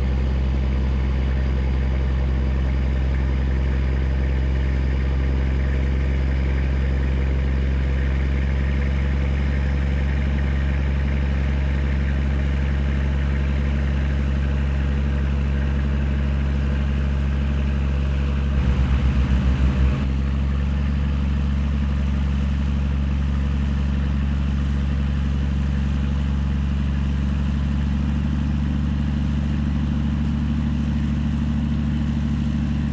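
Heavy diesel truck engine idling steadily, with a short pulsing surge of about a second and a half roughly two-thirds of the way through.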